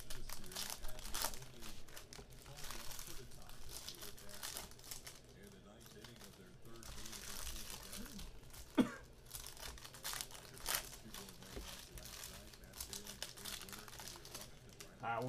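Foil trading-card pack wrappers of 2022 Panini Contenders Football crinkling and tearing as the packs are ripped open by hand, a dense run of crackles. One short, sharp sound a little past halfway is the loudest moment.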